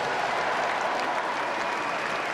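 Large stadium crowd applauding.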